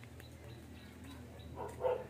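Faint, steady background, then near the end two short, high-pitched animal calls.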